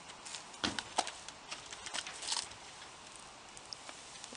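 Percheron draft mare's hooves stepping up the ramp onto the floor of a horse trailer as she loads: a few irregular knocks over the first two and a half seconds, the loudest about a second in.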